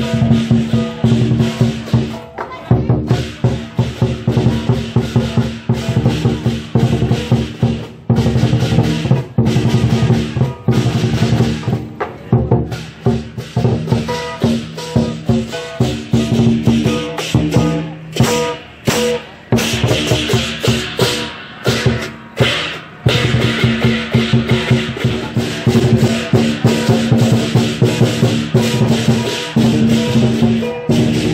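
Lion dance percussion band playing: a large Chinese drum beaten in a fast, driving rhythm with crashing hand cymbals and a ringing gong.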